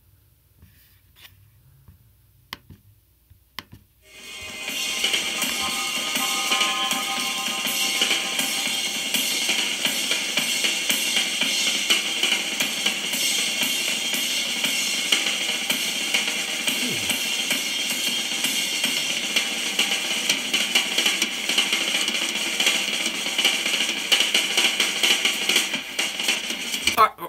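A few faint clicks, then about four seconds in a live drum-kit solo starts and runs on loud and dense: fast, clean snare strokes with cymbals. The strokes are what the teacher thinks was a six-stroke roll and paradiddle-diddles, ending in rapid-fire, powerful single strokes.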